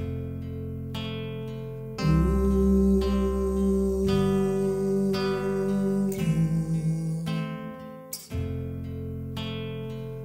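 A looped acoustic guitar chord pattern with a low bass line plays back from a loop pedal while a man sings long, held wordless vocal harmonies over it. The held notes come in about two seconds in and change pitch twice before breaking off near the end.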